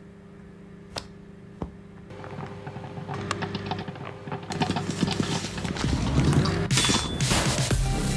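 Microwave oven humming steadily while popcorn kernels pop inside it: a couple of single pops at first, then popping that grows faster and denser into a rapid crackle, ending in a loud rush about seven seconds in as the popcorn bursts out.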